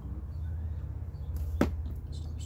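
One sharp knock about one and a half seconds in, as something hand-held is set down or struck on the wooden workbench, over a steady low hum.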